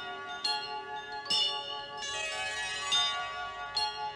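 Soft interlude music of bell-like chimes ringing over held tones, with a new chime note struck every second or so.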